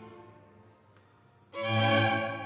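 String chamber orchestra: a held chord fades away, followed by a faint lull, then about one and a half seconds in the strings enter together on a loud sustained chord.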